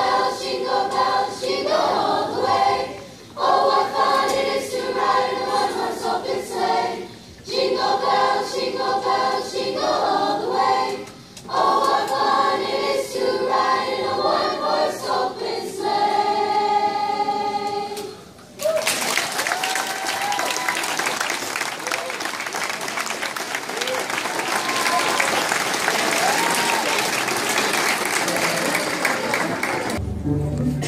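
Choir of school students singing in phrases with short breaths between them, closing on a long held note about two-thirds of the way through. The audience then breaks into applause that runs on to the end.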